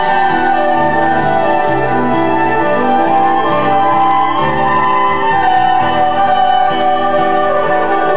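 Folk-rock band playing an instrumental passage live, with a fiddle lead over guitar, bass notes and drums. Cymbal strokes tick along regularly.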